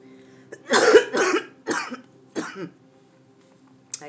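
A person coughing four times over about two seconds, the first two coughs the loudest.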